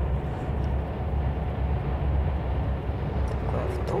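Steady low rumble of a moving bus, engine and road noise, heard from inside the passenger cabin while it drives along the highway.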